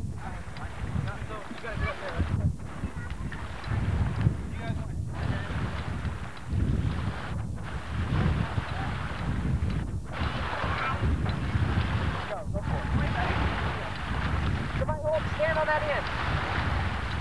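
Wind buffeting a camcorder microphone in a low, steady rumble, with indistinct voices of people talking in the background. The sound drops out briefly about every two and a half seconds.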